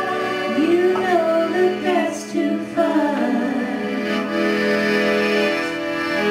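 Live folk band music: women's voices singing in harmony over accordion and mandolin. The voices slide in pitch through the first half, giving way to steady held notes in the second half.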